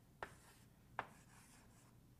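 Chalk writing on a blackboard, faint: two short sharp taps about a second apart as the chalk strikes the board, with a light scratch of the strokes between.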